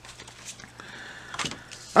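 Cardstock scratch-off lottery tickets being handled and slid onto a wooden tabletop: faint rustling with a few light taps.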